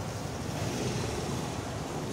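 Steady low rumbling background noise of an open-air market, with no distinct events.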